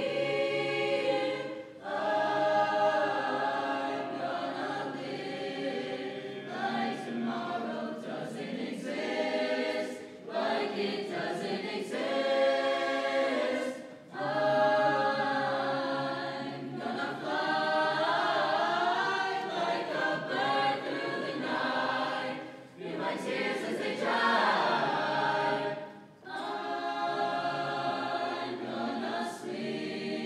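Mixed choir of high-school voices singing a choral piece in parts, in phrases with short dips between them.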